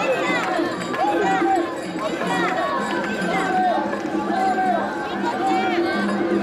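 A large group of mikoshi bearers chanting in unison as they carry a portable shrine, a shouted call repeating about once a second over a dense mass of overlapping voices.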